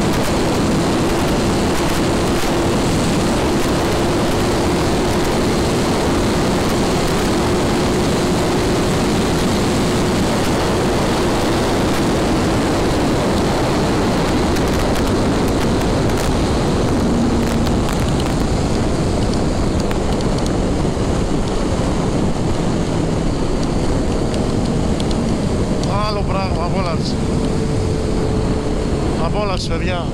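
Suzuki Hayabusa inline-four engine running steadily in sixth gear at highway speed, buried under heavy wind rush on the microphone. The hiss of the wind eases somewhat in the last third.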